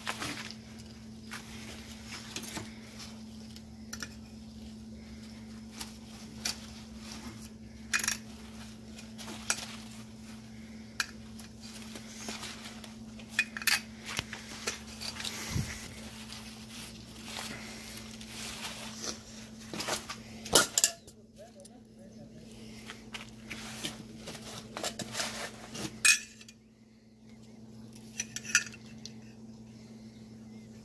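Pliers snipping and clinking against the metal inflator canister of a deployed car side airbag as it is taken apart: many sharp clicks and clinks at irregular intervals, the loudest about 20 and 26 seconds in. A steady low hum runs underneath.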